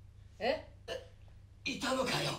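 A short startled vocal exclamation with a rising pitch about half a second in, then a voice beginning to speak near the end.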